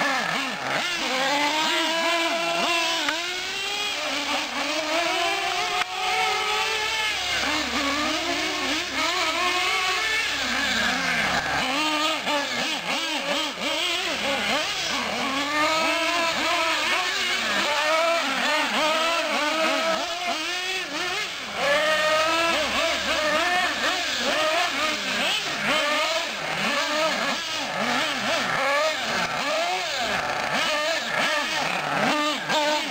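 Small nitro engines of Team Associated SC8 1/8-scale radio-controlled short course trucks revving up and dropping back over and over as the drivers throttle on and off, two or more engine notes rising and falling over one another.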